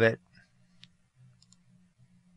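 A single sharp computer-mouse click, then a few fainter ticks, over a faint low electrical hum, as the mouse drags a transition's centre point in editing software.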